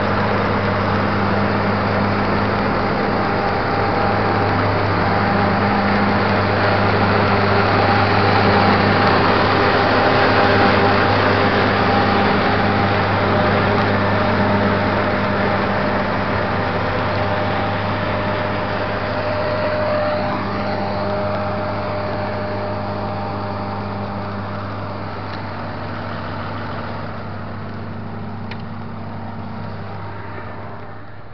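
John Deere S680i combine harvester running at work while harvesting: a loud, steady machine drone with a strong low hum and several steady tones on top. It eases off gradually over the last several seconds.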